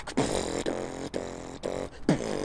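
Solo female beatboxing: a sharp hit followed by two held, pitched bass notes made with the mouth, the first about a second long, the second shorter.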